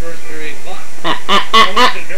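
Baby's excited squawking vocalisations: four short, loud bursts in quick succession about a second in.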